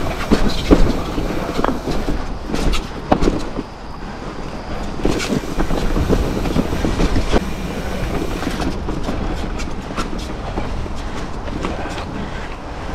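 Mountain bike riding fast down a rocky dirt singletrack: steady rattle and tyre noise with frequent sharp knocks as it runs over rocks and roots, the loudest in the first second.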